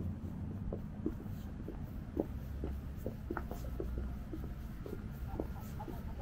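Footsteps on stone paving slabs at a steady walking pace, two to three steps a second, over a low, steady rumble of city street traffic.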